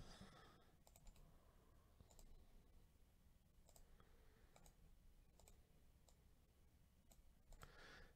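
Near silence with faint, scattered computer mouse clicks, roughly one every half second to a second.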